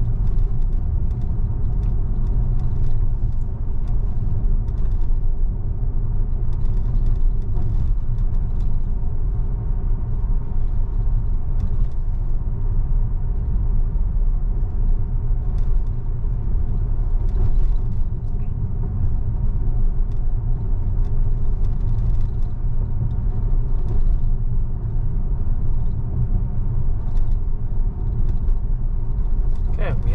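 Steady low road rumble and tyre noise inside a Tesla's cabin while it cruises at a constant speed of about 35 mph.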